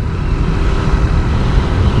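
Steady wind rumble and road noise from a Suzuki GSX-R150 motorcycle being ridden at speed, its engine running evenly beneath the rush, with no rise or fall in revs.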